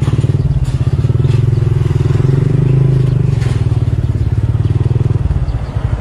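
Yamaha Sniper MX 135's single-cylinder four-stroke engine running at low speed, heard from the rider's own camera, with the revs dropping as the bike slows to a stop about five seconds in.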